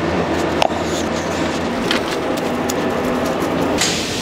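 A steady low mechanical drone with a few short clicks over it.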